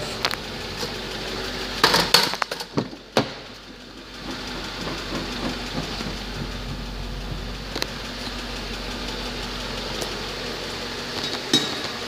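Mercedes-Benz CLS500's 5.0-litre V8 idling steadily, with a few loud knocks and rustles from handling about two to three seconds in.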